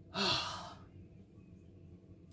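A person sighs once: a short breathy exhale with a brief voiced start, lasting about half a second.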